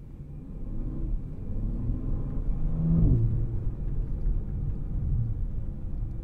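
Twin-turbocharged 6.0-litre W12 engine of a Bentley Flying Spur Speed accelerating: the engine note rises in pitch and grows louder over the first three seconds, drops at an upshift, then runs on steadily under load.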